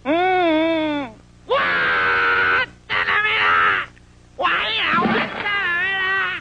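A cartoon character's voice giving a run of about five loud wordless cries and wails with sliding, wavering pitch, two of them rough and strained like screams, separated by short pauses.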